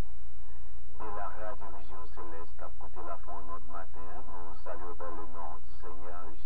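A voice speaking in a radio broadcast, with the high end cut off, over a steady low hum.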